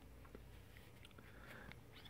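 Near silence: room tone, with a few faint light ticks of trading cards being handled and slid against each other.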